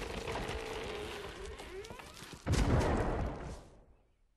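Cartoon sound effects of a giant carrot being pulled out of the ground: a straining, rumbling noise, then a sudden loud burst about two and a half seconds in as the carrot comes free, dying away within a second.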